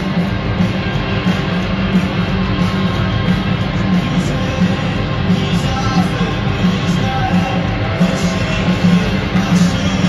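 Live rock band playing loudly through a stadium PA, with electric guitars over a steady driving drum beat, recorded from the crowd.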